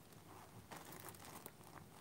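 Faint crinkling and light clicks as a box of glass Christmas ornaments is handled and searched for broken pieces.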